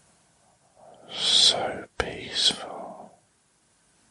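A man whispering two short phrases, each about a second long, with strong hissing 's' sounds and a brief break between them.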